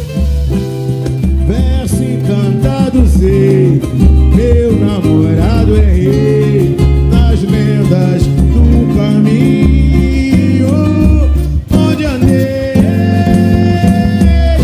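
Live samba music: plucked strings, percussion and a strong bass beat, with voices singing.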